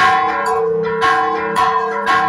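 Church bells rung in a repique: rope-pulled clappers strike several fixed bells of different pitches in a quick rhythmic pattern, about two strokes a second, each stroke ringing on under the next.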